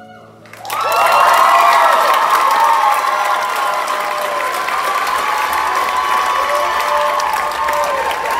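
The last held note of the music dies away, then about half a second in an audience starts applauding loudly, with high-pitched cheering and whoops over the clapping.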